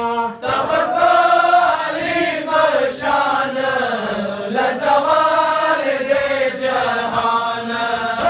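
Men's voices chanting a noha, a Shia mourning lament, together, the melody rising and falling in long drawn-out lines.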